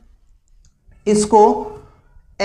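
About a second of near quiet with a few faint clicks, then a man's voice speaking one short word.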